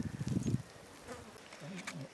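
A flying insect's low buzzing hum, uneven and wavering in pitch.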